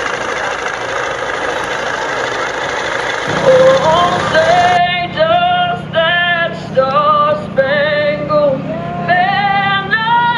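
A singer performing a national anthem in long, held notes. For the first few seconds the singing is muddied by background noise, and it comes through clearer about five seconds in, with a steady low hum underneath from about three seconds in.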